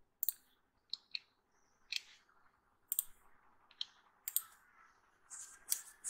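Faint computer mouse clicks: about ten sharp clicks at irregular gaps, some in quick pairs.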